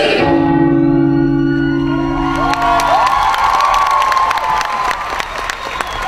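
Backing music ends on a long held chord that fades out about three seconds in. An audience then cheers and whoops, with applause starting up.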